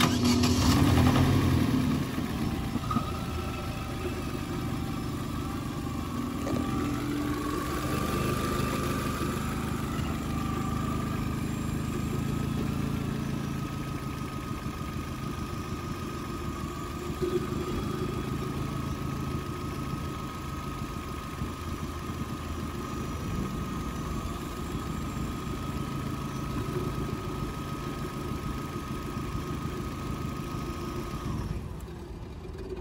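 Opel Astra H engine idling steadily, a little louder in the first two seconds, with a steady high-pitched whine running over it.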